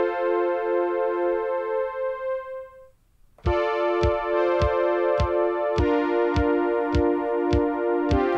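Electric-piano-like synth chords played back from a Novation Circuit Tracks sequencer, held longer with the gate extended. The chords fade out about three seconds in; after a brief silence the pattern starts again with a steady kick drum, and the chord changes near six seconds.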